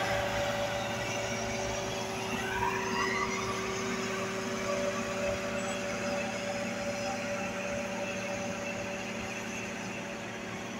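Diesel engines of heavy road-building machines running steadily, chiefly a Caterpillar single-drum roller close by, with a steady engine hum that fades slightly near the end. A short rising whine comes about two to three seconds in.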